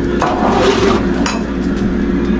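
Kitchen handling sounds as plastic food containers are taken from a fridge: a rustle lasting under a second near the start, then a light click, over a steady low hum.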